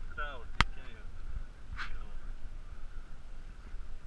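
Low wind rumble and water around a pedal catamaran, with a sharp click about half a second in and a softer click near two seconds.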